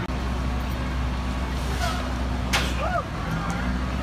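Steady low rumble of a fire engine's diesel running at the scene. A single short, sharp burst of noise cuts in about two and a half seconds in.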